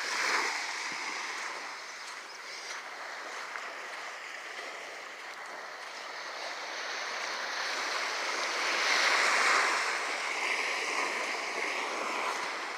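Small waves lapping and washing up onto a sandy, shell-strewn beach, a steady hiss of surf that swells to its loudest about nine seconds in as a wave breaks and rushes up the sand.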